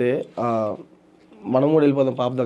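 A man's voice speaking two drawn-out phrases with a short pause between them.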